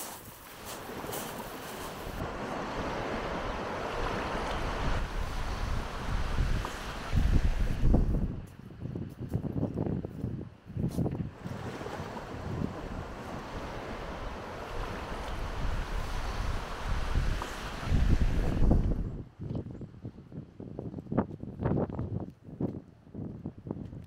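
Wind buffeting the microphone over the wash of surf on a beach, with strong gusts about a third of the way in and again after the middle. Footsteps crunch on shingle in stretches between the gusts.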